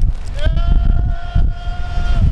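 A person's long, steady-pitched yell during a bungee jump's free fall, starting about half a second in and held to the end. Wind rumble on the microphone runs underneath.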